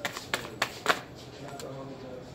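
Tarot cards being handled and laid down on the table: a few sharp card snaps and slaps in the first second, then quieter sliding of cards.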